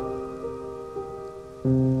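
Soft, slow background piano music: single sustained notes sound one after another, with a louder low note about one and a half seconds in.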